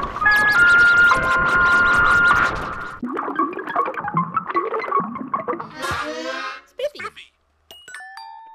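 Two production-company logo jingles played over each other, with synthesizer music and cartoon sound effects. For the first three seconds, steady chiming tones sit over rapid clicking. Then comes a busier tune with a voice, a quick sweep in pitch about six seconds in, and a short silence near the end.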